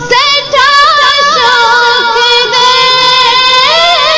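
A young woman's solo voice singing a Kashmiri naat, an Islamic devotional song. The line starts with quick ornamented turns, settles into one long held note, and rises again near the end.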